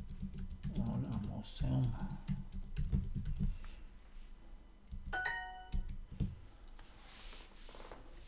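Typing on a computer keyboard: a quick run of key clicks through the first three and a half seconds. About five seconds in comes a short tone with several pitches ringing together.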